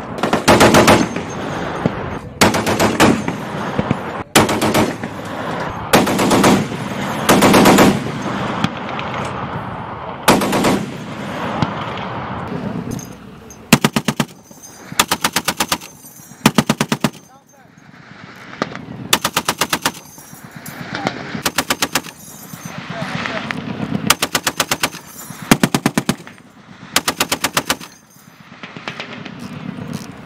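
Browning M2 .50-calibre heavy machine gun firing repeated short bursts of about a second each, with brief pauses between them. In the first half the bursts are blurred and echoing. In the second half each single shot in a burst is distinct.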